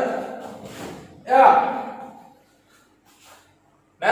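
A man's shouted count followed about a second later by a loud kihap shout, each starting sharply and trailing off, as a hopping side kick is delivered on the call.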